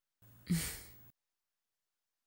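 A woman's single short sigh, a breathy exhale about half a second in.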